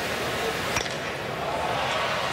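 Metal bat striking a baseball once with a sharp ping, just under a second in, over the steady noise of the crowd in the stands.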